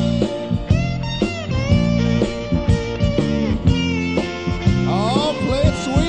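A blues band playing live, a few seconds into a song: an electric guitar line with notes bending up and down over bass and steady drums.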